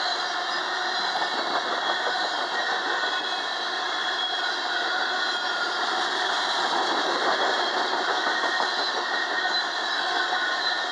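Freight cars of a passing train rolling by at trackside: steady wheel-on-rail rumble and rattle from covered hopper cars and then tank cars.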